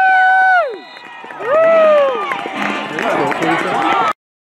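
Spectator's high-pitched cheering yells: one long held shout breaking off early, then a second long yell about a second and a half in that falls in pitch, over crowd voices.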